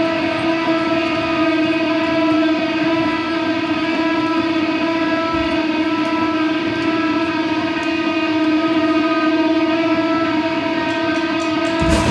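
Electric guitar feedback through the amplifier: one steady held tone that does not fade. The full band comes in right at the end.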